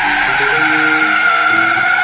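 Tire-screech sound effect: a loud, sustained squeal that starts suddenly and carries on over a backing beat.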